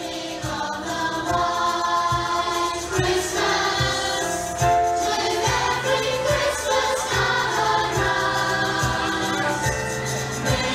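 Children's choir singing a Christmas song in unison over a backing track with a steady low beat, carried through a PA system.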